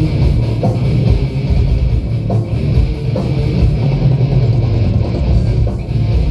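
Live heavy metal band playing an instrumental passage: distorted electric guitars, bass and drums, with no singing.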